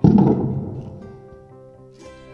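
A wooden footstool collapsing under a person's weight: its magnet-mounted legs tip over and the stool hits the carpeted floor in one sudden dull thud that dies away within about a second. The legs tipping out is the sign of a mounting with too much leverage and too little sideways support.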